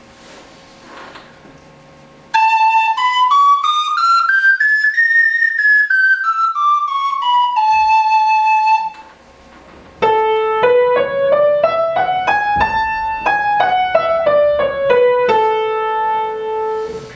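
A friscalettu, the Sicilian cane flute, pitched in A, plays an A major scale up and back down. About a second later a piano plays the same scale an octave lower, up and down, each note struck.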